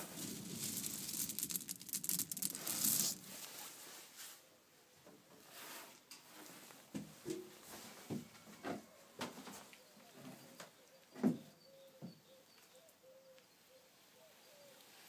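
Wood pellets rustling and rattling as a hand stirs through them in a boiler's pellet hopper for about three seconds, followed by a few scattered light knocks and taps.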